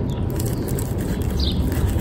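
Outdoor background noise: a steady low rumble, with a faint short bird chirp about one and a half seconds in.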